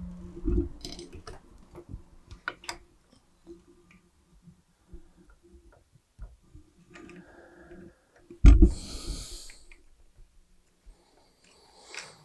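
Handling sounds at a soldering bench: scattered light clicks and knocks as a metal XLR plug and tools are handled at a small vise. About eight and a half seconds in there is a louder thump followed by about a second of hiss.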